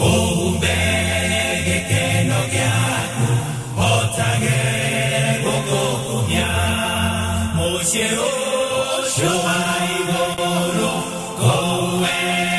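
A Kikuyu gospel (kigooco) song: several voices singing together in long held lines over a steady bass, phrase after phrase.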